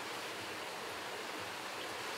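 Steady, even background hiss with no distinct events: room noise.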